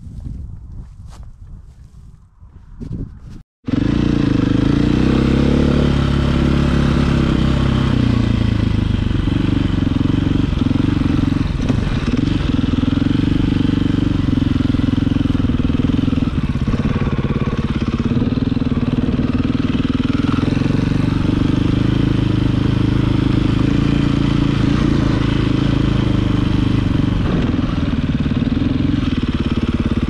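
KTM 450 single-cylinder four-stroke dirt bike engine running under way, its pitch rising and falling with the throttle. It cuts in abruptly a few seconds in, after a stretch of quieter clattering.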